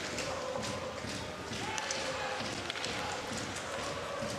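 Ice hockey game sound: steady crowd noise in an arena, with many short clicks and knocks of sticks, puck and skates on the ice.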